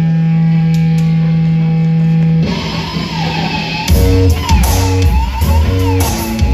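A live rock band starting a song: a steady low note is held for about two and a half seconds, then the full band comes in loudly about four seconds in, with heavy bass guitar, regular cymbal strokes and a wavering higher tone over it.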